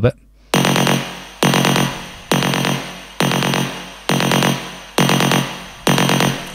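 A distorted electronic hit from a techno track, played solo in a loop through a soft clipper. It sounds seven times, about 0.9 s apart, each with a sharp start and a fading tail. The clipping has softened its transient.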